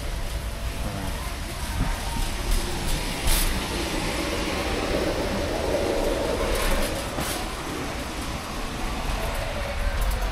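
Wire shopping cart rolling over a concrete floor, its wheels and basket rumbling and rattling steadily, with a few sharp clicks about three and seven seconds in.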